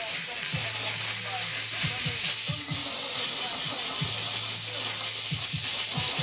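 Handheld steam cleaner jetting steam onto a sneaker: a loud, steady hiss that cuts in suddenly, with a low hum underneath.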